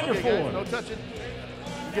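A man's voice over a public-address system, trailing off in the first half-second, with background music under it.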